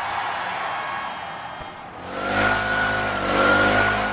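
A hiss-like noise that fades away over the first two seconds, then a car engine running at a steady pitch from about halfway through, dying away at the end.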